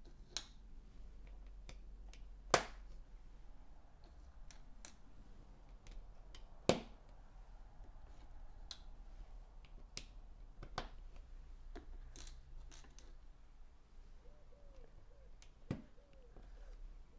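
Plastic building-brick tiles clicking into place on a baseplate's studs: a handful of sharp single clicks every few seconds, the loudest about two and a half seconds in, over a faint low hum.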